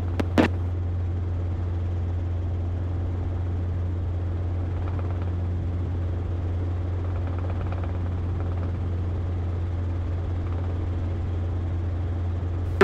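Robinson R22 helicopter in level cruise: a steady low drone of rotor and piston engine, heard from inside the small cabin. One short click comes about half a second in.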